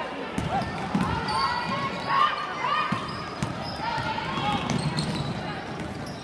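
A basketball bouncing on a hardwood gym floor during play, with players and spectators shouting and calling out throughout.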